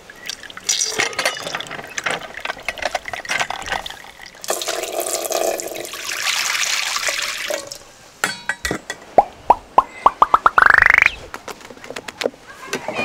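Fresh orange juice trickling from a lever-press citrus juicer into a metal cup, then poured from the cup into a large pot. Near the end, a quickening run of ringing taps rising in pitch runs into a short buzz that stops abruptly.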